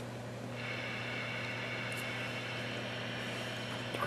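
Steady electrical hum with receiver hiss from a CB base station radio on AM; the hiss grows stronger about half a second in, then holds steady.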